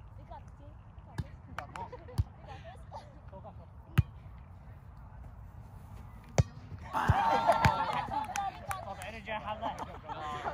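A volleyball being struck by players' hands and forearms in a rally: sharp single smacks a second or two apart, the loudest about four seconds in. From about seven seconds in, players are shouting and calling over more hits.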